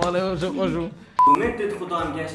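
A man's voice, then a single short electronic beep at one steady high pitch about a second in, of the kind dubbed over speech to bleep a word out, before the talk goes on.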